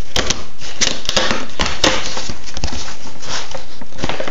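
Off-camera handling noise close to the microphone: a run of sharp clicks and rustles, densest in the first two seconds, then a lighter rustle.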